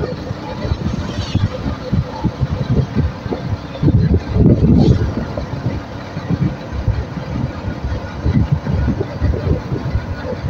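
Moving road vehicle: a steady road rumble under irregular low wind buffeting on the microphone, with the strongest gusts about four to five seconds in.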